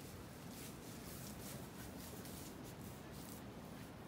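Faint, short breathy snuffles of an alpaca sniffing at a cat, repeated several times over a low steady rumble.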